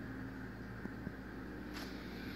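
A steady low mechanical hum of a running machine, with a couple of faint clicks in the middle and a brief hiss near the end.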